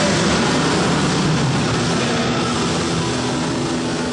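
Live heavy metal band holding a sustained distorted chord with a wash of cymbals at the close of a song, slowly dying away.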